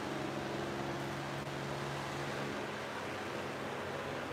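Steady room noise: an even hiss with a faint low hum whose tones shift slightly about halfway through.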